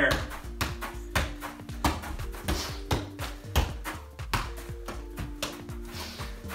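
Background music: held chords that change every second or so over a steady beat.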